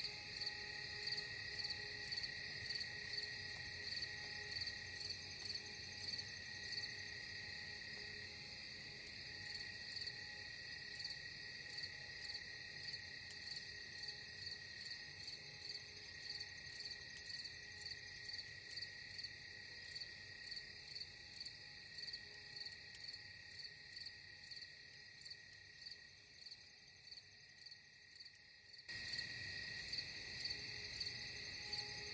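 Faint insect chirping, even and pulsing at about three chirps every two seconds over a steady high hum. It fades a little, then jumps suddenly back to full level just before the end.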